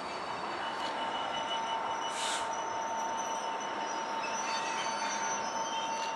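GBRf Class 66 diesel locomotive 66714, with its EMD two-stroke engine, running slowly past at the head of a scrap freight train. A steady drone with a constant tone is heard, and a brief high screech about two seconds in.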